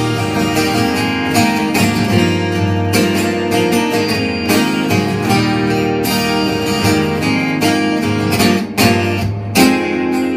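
Two acoustic guitars strummed together in an instrumental passage with no singing. A hard strummed chord near the end is left ringing.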